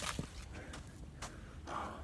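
A few scattered sharp knocks and scuffs of someone scrambling over rock and dry leaf litter on a steep slope, followed near the end by a breathy exclamation.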